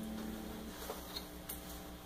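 Gorilla GG110 solid-state guitar amp idling with no note played: a faint steady hum and hiss, with a few faint ticks about a second in.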